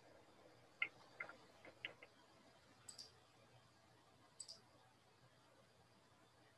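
Near silence with faint clicking of a computer mouse: a few single clicks in the first two seconds, then two quick double-clicks about three and four and a half seconds in.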